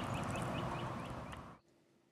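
A small bird chirping over and over, about four short high chirps a second, over a steady outdoor hiss; it all fades out near the end.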